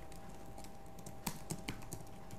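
Computer keyboard being typed on: a few quick keystrokes, bunched together in the second half.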